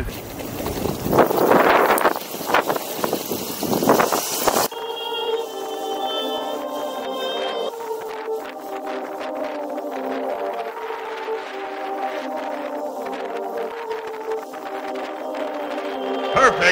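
Gusting wind and road noise on the microphone as the electric skateboard gets under way. About five seconds in this gives way abruptly to background music of held, slowly changing chords.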